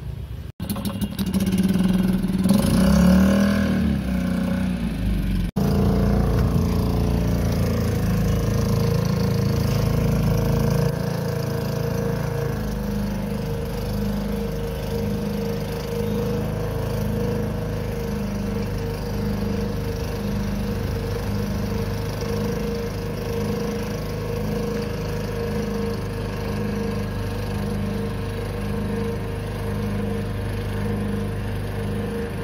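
A motorboat's engine running as the boat moves along the canal: it swells and changes pitch in the first few seconds, then settles into a steady drone with a slow, regular throb.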